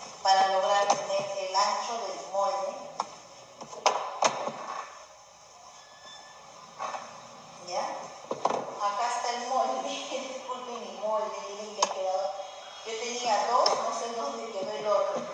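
A person's voice, talking or voice-like, through most of the stretch, with a lull about five to seven seconds in and a few sharp clicks near four and twelve seconds.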